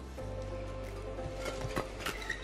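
Steady low hum of the badminton hall, then a few short sharp clicks from about a second and a half in: rackets striking the shuttlecock as a doubles rally begins.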